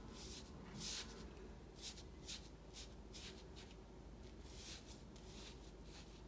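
Faint swishes of a large Chinese ink brush sweeping across painting paper: a run of about ten short strokes, the loudest about a second in.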